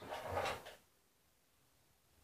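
Brief soft rustle of thin plastic gloves as hands press and shape a piece of paste, lasting under a second, then near silence.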